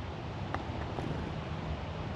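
Steady low wind noise on the microphone, with a faint click about half a second in.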